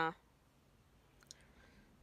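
End of a spoken word, then a quiet pause broken by one faint, short click a little past a second in and a few fainter ticks after it.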